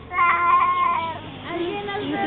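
A child's high-pitched, drawn-out squeal lasting about a second, followed by softer voices.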